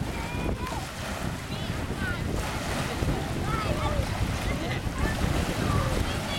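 Small waves lapping and breaking along a sandy shoreline, with wind rumbling on the microphone.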